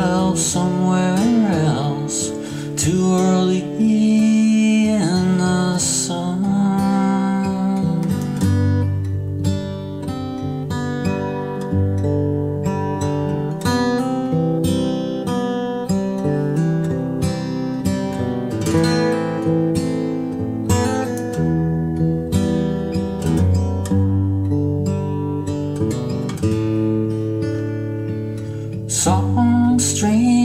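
Solo acoustic guitar strummed in a steady rhythm, an instrumental break between verses of a slow alt-country song.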